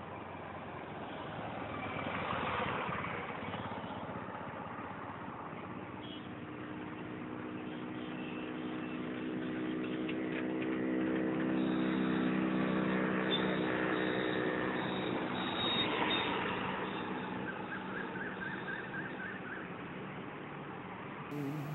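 A motor vehicle's engine hum over a steady rushing traffic noise. The hum grows louder toward the middle and fades near the end.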